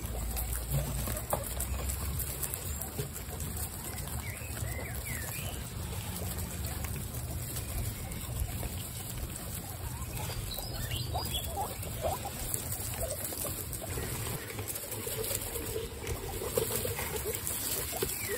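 Many guinea pigs munching lettuce leaves and shuffling through hay, a dense crackle of small bites and rustles, with a few short high squeaks now and then over a low steady rumble.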